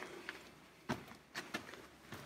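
Footsteps on a gravelly dirt cave floor: a few soft scuffs and crunches, with two sharper steps a little before one second in and around one and a half seconds.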